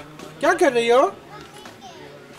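Speech: one voice asks "What are…" about half a second in, followed by a faint, steady background.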